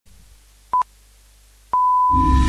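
Radio time-signal pips at the top of the hour: one short beep, then about a second later a long beep at the same pitch that marks the hour and opens the news bulletin.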